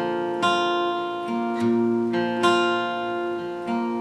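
Steel-string acoustic guitar capoed at the third fret, picking the notes of a G chord shape one string at a time and letting them ring together: a slow picked pattern of about six notes.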